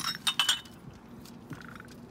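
Vintage glass ashtrays clinking against one another as they are handled on a table: a quick cluster of four or five bright clinks with a short ring in the first half second, then one faint knock about a second and a half in.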